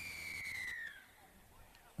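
Referee's whistle: one long blast, sliding slightly down in pitch and ending about a second in, signalling a penalty for not being square at the marker.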